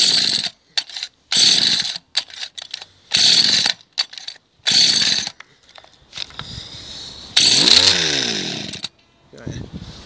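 Two-stroke hedge cutter engine running unevenly in short surges broken by sudden drops, revving up and down once near the end, then dying away about nine seconds in: the engine keeps cutting out while its carburettor fuel-air mixture screws are being set.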